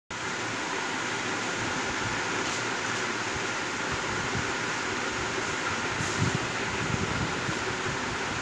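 Steady, even rushing noise with a few faint knocks about six seconds in.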